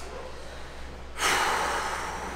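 A person's sharp, loud breathy exhale, a huff of air with no voice in it, starting just past a second in and tailing off, over a low room hum.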